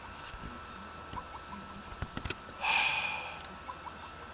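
Quiet room tone with a steady hum, a few faint clicks and a short burst of noise about two and a half seconds in.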